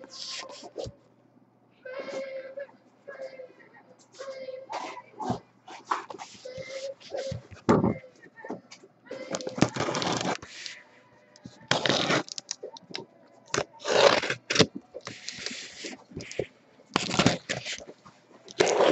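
A box cutter slicing the packing tape along the seams of a cardboard case while the tape and flaps are pulled and scraped. It comes as a run of irregular scraping and tearing strokes that get louder and more frequent in the second half.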